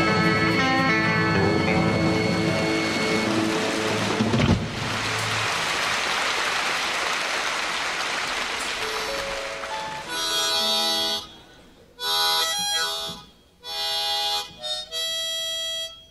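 An electric rock band plays the final bars of a song in a live recording and ends on a last hit about four and a half seconds in. The audience applauds. From about ten seconds in a harmonica blows a few short held notes separated by pauses.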